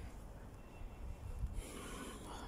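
A person's soft breath out through the nose close to the microphone, swelling about one and a half seconds in, over a low steady rumble.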